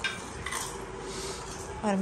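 Light clinks and scrapes of stainless steel plates, bowls and spoons as a family serves and eats a meal, with a sharper clink right at the start.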